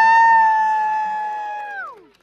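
A long drawn-out high call from a voice, held on one steady pitch for nearly two seconds. It slides up into the note at the start and drops away near the end, with fainter voices beneath it.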